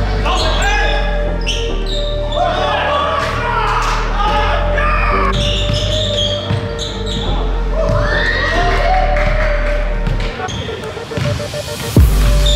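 A basketball bouncing repeatedly on a hardwood gym floor as players dribble, with players' voices and background music with a steady bass line.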